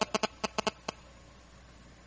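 A quick, irregular run of sharp clicks, about seven in the first second.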